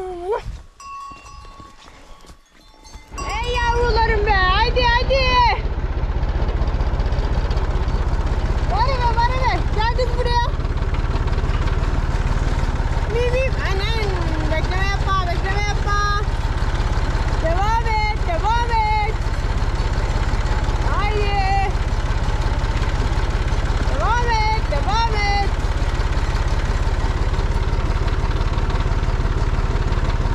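Farm tractor engine running in a steady low drone, starting suddenly about three seconds in as it follows the cows. A voice sounds over it in short wavering phrases every few seconds.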